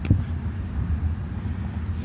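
A steady low rumble of background noise, with no distinct events.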